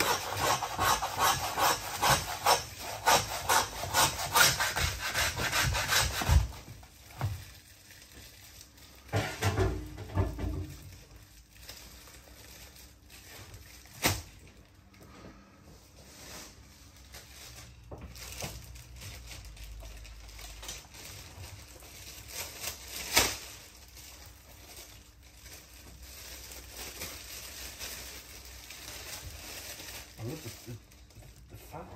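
Butcher's hand bone saw cutting through the chine bone of a beef rib joint in quick back-and-forth strokes, stopping about six seconds in. After that, quieter knife cutting on the meat, with a couple of sharp knocks.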